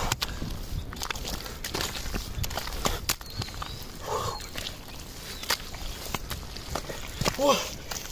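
Hands digging through wet mud: irregular squelches, slaps and small sharp clicks.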